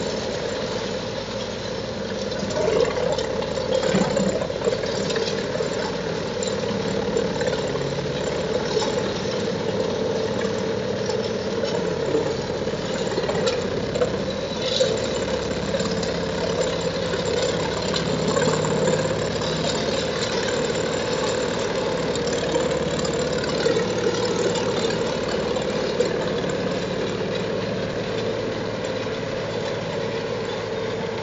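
Eschlböck Biber 78 wood chipper and the tractor driving it, running steadily under load while chipping whole branches, with irregular louder cracks and surges as wood goes through the drum.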